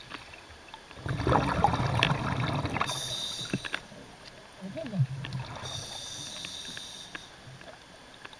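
Underwater sound of a diver's breathing: a bubbling rumble of an exhale about a second in, then hissing breaths with a thin ringing whistle, twice.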